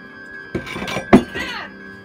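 Horror-film soundtrack: a steady eerie music drone, broken about half a second in by a burst of sound with a sudden loud hit just after a second, then a sound falling in pitch.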